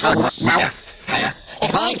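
Speech only: an effect-altered voice in three short bursts with brief gaps between them.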